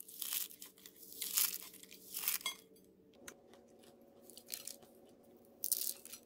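Crisp, flaky fried farsi puri being crushed in the hand, crunching and crackling as it breaks into layered crumbs: three crunches in the first half and one more near the end. The brittle crackle shows the puri is fried fully crisp and flaky.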